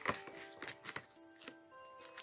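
Soft background music with a few light crinkles and clicks from a foil-lined bag of chocolates as a hand reaches in and pulls out a wrapped chocolate square.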